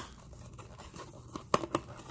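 Cardboard trading-card box being handled and its lid folded open: faint rustling of card stock, with a few short sharp clicks of cardboard about a second and a half in.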